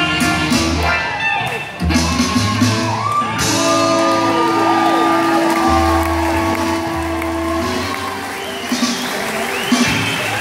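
A rock and roll band playing the close of a song, with singing, ending on a long held final chord. The crowd shouts and whoops, with cheering as the music stops near the end.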